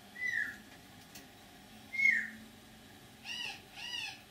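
Four short animal calls: two brief falling whistles about two seconds apart, then two quick rising-and-falling calls in close succession near the end.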